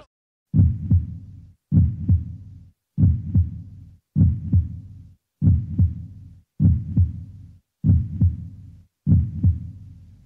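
A heartbeat sound effect: a low double thump, like lub-dub, repeating about every second and a quarter, eight times. Each beat fades and then cuts off abruptly.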